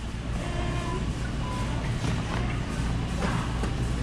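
Grocery store room tone: a steady low hum with faint background music. Light rustling from foil-wrapped peanut butter cups being handled and a plastic bag being filled.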